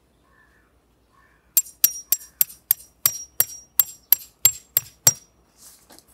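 Metal tent peg being driven into the ground with a hammer: about a dozen sharp, ringing strikes, roughly three a second.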